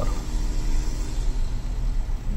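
Bacharach refrigerant recovery unit's compressor running with a steady low hum. Its suction valve is closed, so it is pulling the suction side down toward zero pressure ahead of its low-pressure auto shut-off.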